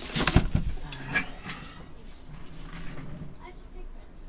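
Sealed cardboard card boxes being handled and set down on a table: a few knocks and rustles in the first half second. Faint voices follow in the background.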